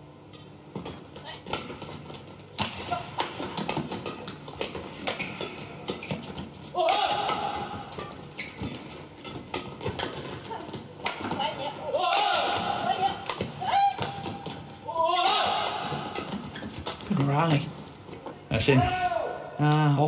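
Badminton rally: sharp racket strikes on the shuttlecock and shoes squeaking on the court, with players' shouts near the end as the point finishes.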